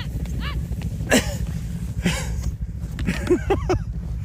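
Snowmobile engines idling in a steady low rumble, with clusters of short, high, rising-and-falling calls on top, most of them near the end.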